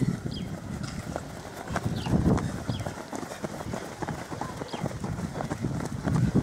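Footfalls of a group of runners on grass and dirt: many quick, irregular thuds overlapping as the pack passes close, louder near the start and about two seconds in.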